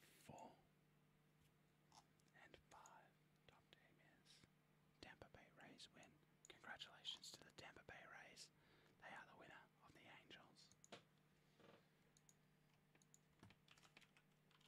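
Near silence: room tone with a faint steady electrical hum, a few faint clicks, and soft whispering in the middle.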